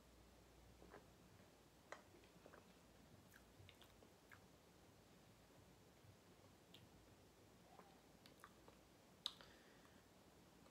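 Near silence broken by faint, scattered mouth clicks as a man swallows and tastes a soda, with one sharper click near the end.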